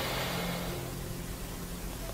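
A quiet, steady low hum over a faint hiss, a pause with no speech, fading slightly toward the end.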